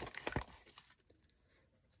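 Cardstock rustling and a few small snaps as a die-cut greeting is pushed out of its card sheet, all within the first half second.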